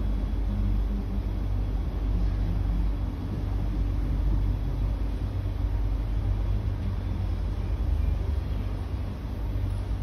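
Cabin noise inside a C151B MRT train car as it slows into a station: a steady low rumble of wheels on the track with a faint motor hum.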